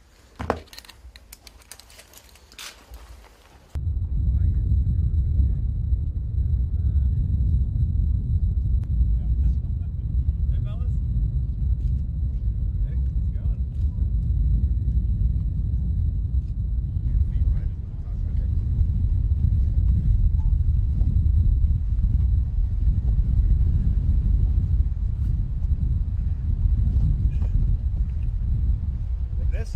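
A few light metallic clicks of flight-harness fittings being handled. About four seconds in, a sudden switch to a loud, steady low rumble of outdoor airfield noise, with a faint, steady high whine above it.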